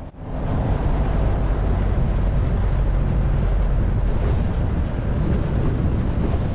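A Piper PA-18 Super Cub floatplane's 150-horsepower engine and propeller running steadily, with wind buffeting the microphone and water rushing along the float as the plane moves across the lake. It starts abruptly just after the beginning and holds at an even level.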